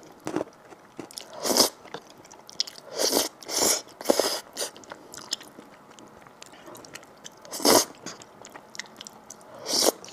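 A person slurping noodles in a thick sauce, about half a dozen loud, airy slurps, with soft wet chewing between them.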